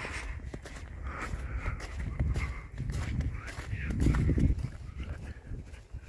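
Footsteps of a person walking along a wet, partly snow-covered asphalt path, under a low rumble that swells about two seconds in and again, loudest, about four seconds in.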